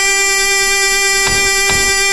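A single long electronic tone held steady in pitch in a dancehall DJ mix's build-up, just after a rising glide. Faint percussive hits come in a little past the middle.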